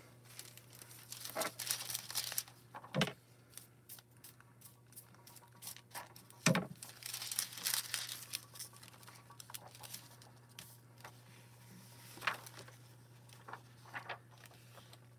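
A thin holographic craft foil sheet crinkling and rustling as it is handled and smoothed down flat over paper, with a few sharper clicks, two of them louder, about three and six and a half seconds in.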